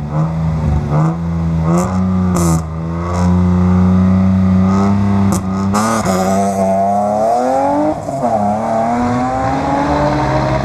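BMW E36 Compact rally car's engine held at raised revs with blips and a few sharp cracks at the stage start, then launching about six seconds in and accelerating hard away, the revs climbing, dropping at a gear change about two seconds later and climbing again.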